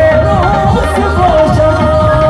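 Live devotional bhajan music: a harmonium holds a long steady note over hand-played dholak drumming and a plucked electric stringed instrument.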